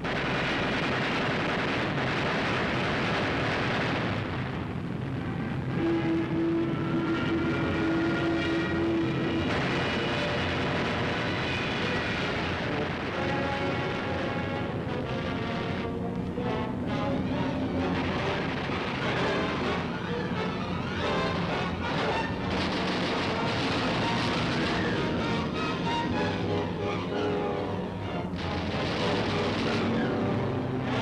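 Background film music with held notes and shifting chords, over a steady drone of aircraft engines.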